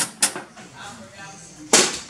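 A metal utensil clicking twice against the jar of spread as it scoops it out, then one short, louder scrape-like noise near the end as the spread is worked out onto the burger.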